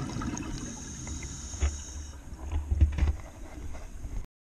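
Scuba diver's breathing heard underwater: a thin hiss through the regulator for about a second and a half, then low rumbling, gurgling surges of exhaled bubbles in the second half.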